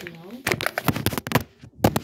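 A quick run of sharp clicks and rattles from small objects being handled, with a brief bit of a woman's voice at the start; the loudest click comes near the end.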